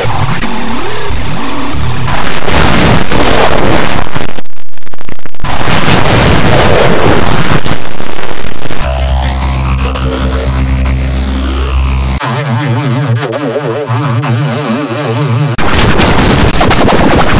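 Heavily distorted, effects-processed cartoon soundtrack, very loud and harsh. A noisy stretch runs to about nine seconds. A steady buzzing drone with a sweeping whoosh follows, then a fast warbling wobble from about twelve seconds.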